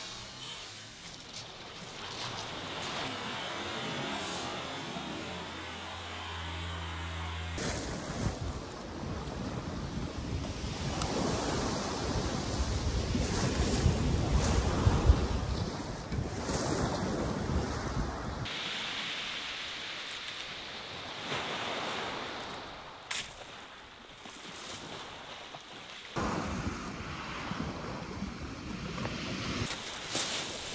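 Surf washing onto a shingle beach, with wind buffeting the microphone. The noise changes abruptly a few times, and the wind rumble is strongest through the middle.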